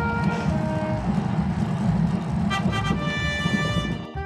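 Rumbling wind noise on the microphone of a camera riding along on a moving road bike, with background music going on under it.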